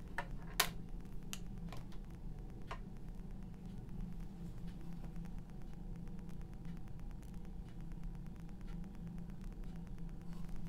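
A steady low hum, with a few light clicks and taps in the first three seconds.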